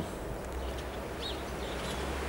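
Outdoor background noise with a low steady rumble and a single short bird chirp about a second in.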